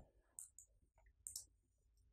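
Near silence broken by two faint computer mouse clicks, about half a second and a second and a quarter in.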